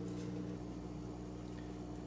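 Aquarium equipment running: a steady low hum with faint bubbling water.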